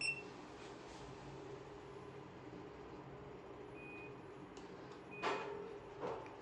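Elevator car-panel card reader giving a short beep as a room key card is touched to it, then single short button-acknowledgement beeps as floor buttons are pressed, over a steady low hum. Just after five seconds in, a brief loud burst of noise is the loudest sound.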